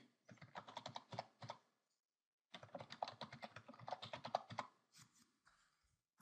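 Computer keyboard typing: two quick runs of keystrokes about a second apart, then a few last taps near the end.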